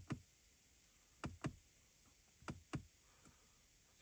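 Soft clicks of a BMW iDrive rotary controller being pressed and nudged to step through the infotainment menu. There are three quick pairs of clicks, about a second and a quarter apart.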